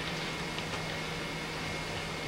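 Steady background hiss with a constant low hum and a faint, thin high-pitched whine; nothing else stands out.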